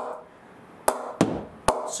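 A leather cricket ball bounced on the face of an SG Sunny Gold cricket bat: three sharp knocks in the second second. This is the bat's ping, which the reviewer rates as springy and the nicest of the three bats.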